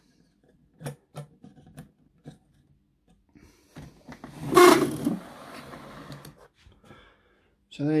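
A few small, sharp clicks from the plastic rear door latches of a 1/14 scale model semi-trailer being worked by hand, then one louder, brief rushing noise about halfway through.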